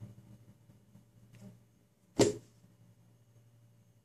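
A single sharp tap about two seconds in, a fingertip striking a smartphone's glass touchscreen, over a faint low hum.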